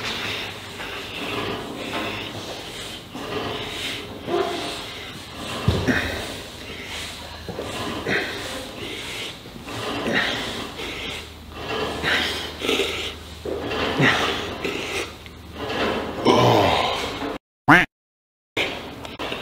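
Heavy breathing and grunting from a lifter doing straight-arm cable pulldowns, with knocks and rubbing from the cable machine's weight stack, repeating about every two seconds with each rep.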